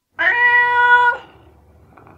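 A single cat meow, held on one steady pitch for about a second, then a faint low tail.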